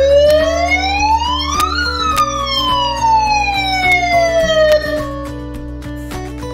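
Built-in siren of a TECNIK PAMPTK-SR88SU megaphone sounding a single wail: the tone rises for about two seconds, then falls more slowly and stops about five seconds in. Background music runs underneath.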